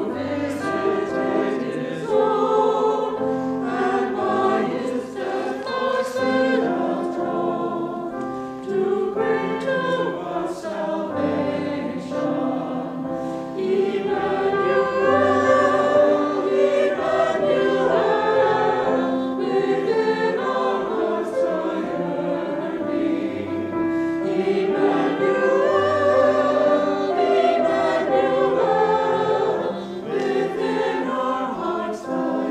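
Small mixed choir of men's and women's voices singing a Christmas anthem in sustained chords.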